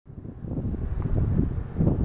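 Wind buffeting the microphone: an uneven low rumble that swells in over the first half second.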